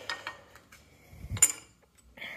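A single sharp metallic clink about one and a half seconds in, with a brief ring: a steel adjustable wrench knocking against the lathe's cast-iron headstock cover, with faint handling sounds before it.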